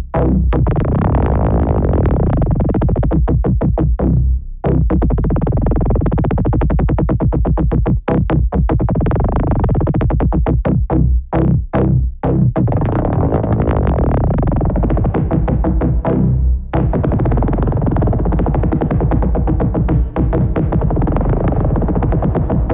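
Elektron Analog Four four-voice analog synthesizer playing a looping sequenced pattern with heavy bass and repeating notes. Its tone brightens and dulls in waves as its knobs are turned.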